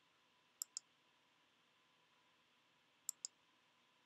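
Computer mouse button clicked in two quick double-clicks, one about half a second in and another about three seconds in, against near silence.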